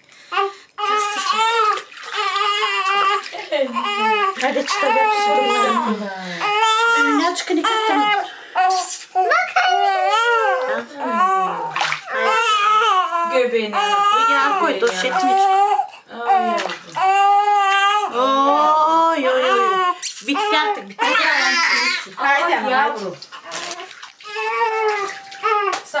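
Newborn baby crying in long, high, wavering wails with short breaks, while water splashes in a small baby bathtub.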